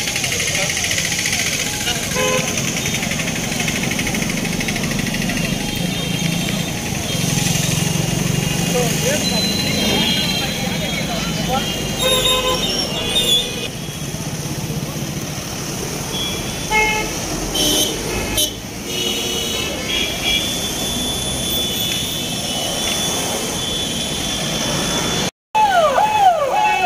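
Car horns honking several times over steady traffic noise and the voices of a roadside crowd, as cars drive slowly past.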